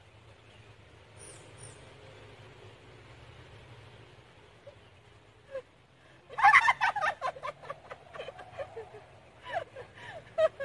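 High-pitched excited squealing and laughter from two women, starting suddenly about six seconds in as a fish is hauled out on a rod: a rapid string of short loud cries that tails off and flares up again near the end.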